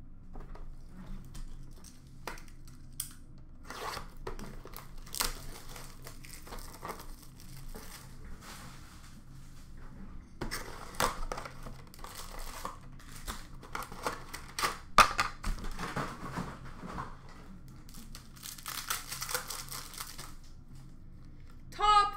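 Upper Deck Allure hockey card packs being torn open: wrappers tearing and crinkling in irregular spells, busiest in the second half, along with the handling of the cardboard box.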